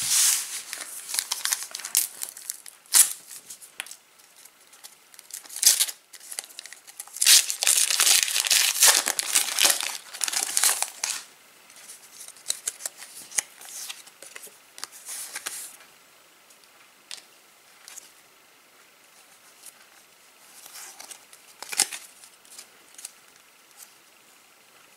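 Foil Match Attax trading-card packets being torn open and crinkled, in irregular bursts that are loudest and longest from about seven to eleven seconds in. Fainter scattered rustles follow in the second half.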